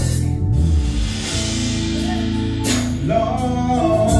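Male gospel group singing live over a band, with bass and drums under held vocal lines. Drum hits come at the start and again about three seconds in.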